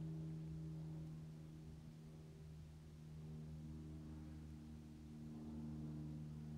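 Faint steady electrical hum: a low drone made of several even tones stacked together, holding level throughout with only slight swells in loudness.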